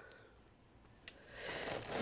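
Quiet handling of bead-craft supplies: a faint click about a second in, then a soft rustle growing louder near the end, as the plastic bags of beads are handled.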